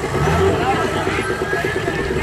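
Nissan Patrol 4x4's engine running at low revs as it crawls over a steep dirt crest, with voices of onlookers over it.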